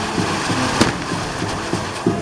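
A fireworks castle (castillo) spraying sparks from its fountains gives a continuous rushing hiss, with one sharp crack a little under a second in.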